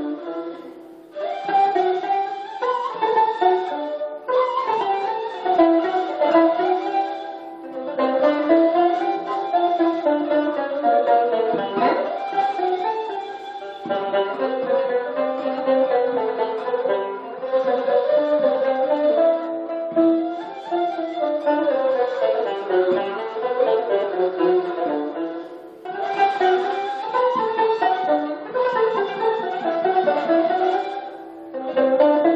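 Ottoman classical music for tanbur, the long-necked fretted lute plucked with a plectrum, and ney, the end-blown reed flute. The two play a melody together in phrases, with brief pauses between phrases.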